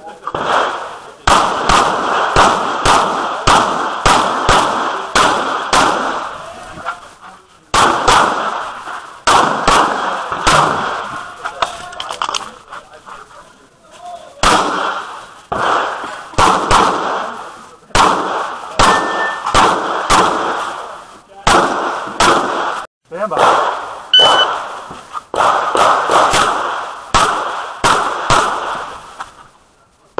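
Semi-automatic pistol fired in rapid strings of shots, about two a second, with short breaks between strings, heard close up from the shooter's position.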